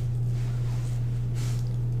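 A steady low hum, with one brief faint rustle about one and a half seconds in.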